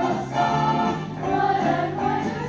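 Mixed choir singing in harmony, holding chords that change every half second or so.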